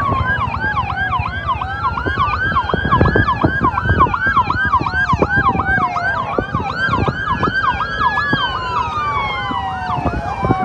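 Several vehicle sirens sounding at once: a fast yelp repeating about four times a second over a slow wail that falls and rises every few seconds, with a low rumble beneath.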